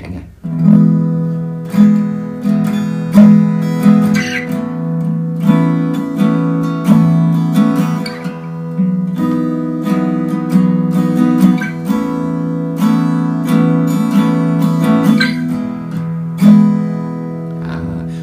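Acoustic guitar playing a chord progression in E major: an open E-major chord shape is moved up the neck to other positions while the open strings keep ringing, so some notes repeat across the chords. The chords are strummed and picked repeatedly and left to ring.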